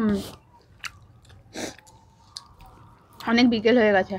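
Close-up mouth sounds of people eating: chewing and a few wet clicks and smacks, with a short voiced sound at the start and a woman's voice speaking over the last second.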